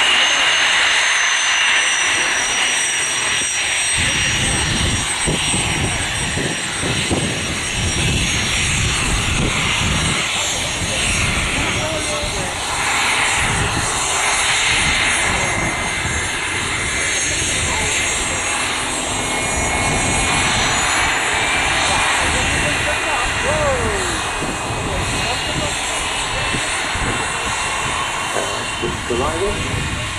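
Embraer Legacy 500 business jet taxiing past at close range, its twin turbofan engines running with a steady high-pitched whine; a low rumble joins about four seconds in.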